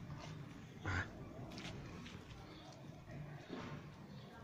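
A cat's short, single cry about a second in, over faint background noise.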